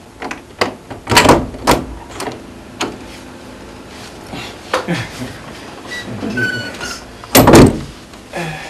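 A series of sharp knocks and clatters: several in the first three seconds, then a louder cluster of knocks near the end.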